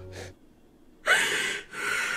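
Two loud, sharp gasping breaths of a person sobbing, the first about a second in and the second near the end.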